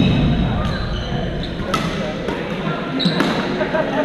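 Badminton rallies in an echoing sports hall: sharp racket-on-shuttlecock strikes every half-second to second, over the chatter of many players.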